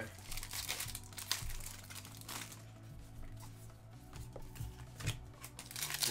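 Foil Pokémon trading card booster pack wrappers being torn open and crinkled in quick succession, a run of short crackles and rips.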